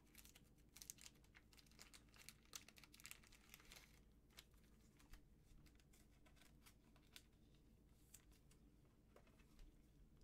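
Faint crinkling and clicking of a thin clear plastic card sleeve handled with gloved hands as a trading card is slid into it. The crackles are busiest in the first four seconds, then come only now and then.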